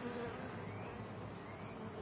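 Honey bees humming faintly and steadily.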